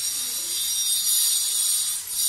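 Shrill, high-pitched drone of insects, steady, growing louder about a second in.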